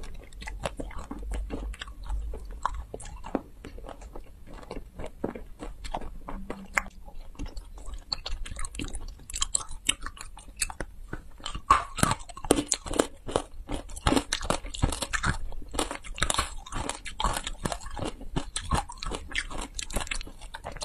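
Close-miked chewing and biting of green jelly candy, wet smacks and irregular crisp crackles that become denser and louder after the first few seconds.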